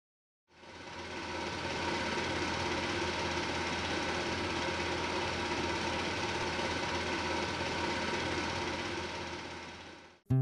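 A steady mechanical running noise with a faint hum in it, fading in about half a second in and fading out near the end.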